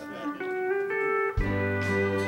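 Country band playing a slow instrumental introduction with long, held notes; low bass notes come in about one and a half seconds in.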